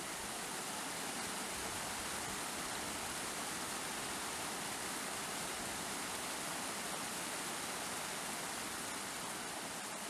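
Small mountain stream running over rocks, a steady rush of water with no breaks.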